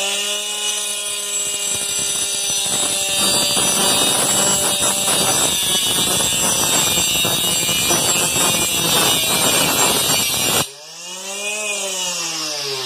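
Homemade saw driven by a hair-dryer motor, fitted with a cutting disc that is not meant for wood. The motor whines at speed, then from about three seconds in the disc grinds through a pencil with a rough, rasping noise for about eight seconds. Near the end the grinding cuts off suddenly and the motor's pitch rises and falls again.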